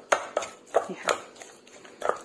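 Pestle pounding soft boiled pumpkin and chillies in a mortar: a quick run of strokes, the later ones fainter.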